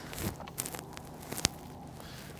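Faint handling noises: soft rustling and a few light clicks, the sharpest about one and a half seconds in, over a low steady outdoor background.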